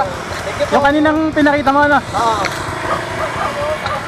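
Short voice-like calls with rising and falling pitch between about one and two seconds in, over steady wind and rolling noise.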